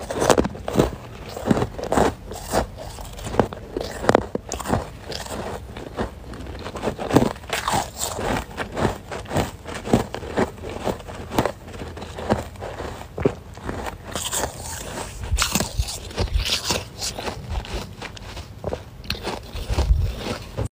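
Close-up crunching of powdery freezer frost being bitten and chewed, a steady run of irregular crisp crunches a few times a second.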